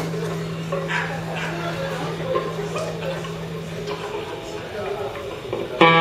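A held droning note from the band hangs and fades out over the first few seconds, with audience chatter and whoops around it. Near the end the band comes in loud on a sustained note.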